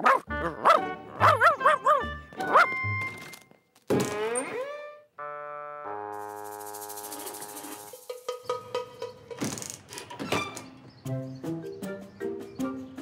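Cartoon dog (Odie) barking and yelping over a few thuds, ending in a falling whine. It is followed by a held chord and a short run of cartoon music notes.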